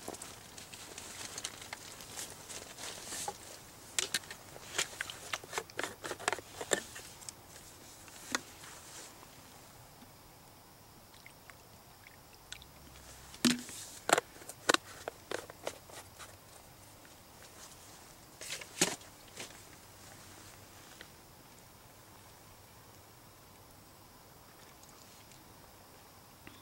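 Light clicks, clinks and rustles of a mug and camp cookware being handled, likely while cold water is added to hot coffee. They come in bursts: a busy stretch at first, another in the middle and a brief one later, over a faint steady background.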